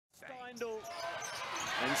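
Basketball dribbled on a hardwood court, a few sharp bounces, under arena crowd noise that swells as the broadcast fades in.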